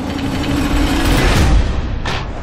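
Trailer sound design: a rising noisy swell over a steady low drone and deep rumble, building to a peak about a second and a half in and then falling away, leading into the studio title card.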